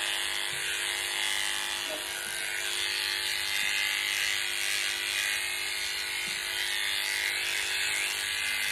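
Cordless electric pet clipper running at a steady pitch as its blade shaves through a Persian cat's matted coat: a constant, even hum.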